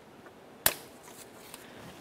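A single sharp plastic click about two-thirds of a second in, as the two halves of the downstream O2 sensor's wiring connector are pulled apart.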